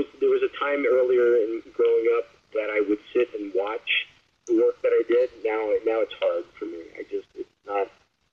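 Only speech: a person talking steadily in short phrases with brief pauses, the sound narrow and thin like a voice over a call or radio.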